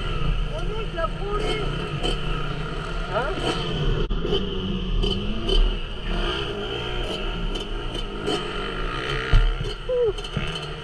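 Yamaha YZ250 two-stroke motocross bike engine running at idle, a steady low rumble, with muffled voices over it.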